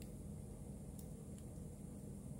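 A few faint clicks of multimeter probe tips against the board's connector slots, over a low steady hum.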